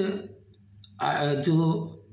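A man speaking Hindi in a lecture, briefly at the start and again from about a second in. Under the voice is a steady high-pitched tone that carries on unbroken through the pause.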